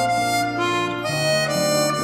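Easttop EAP-12 12-hole chromatic harmonica playing a slow melody in held, sustained notes that shift to new pitches a couple of times.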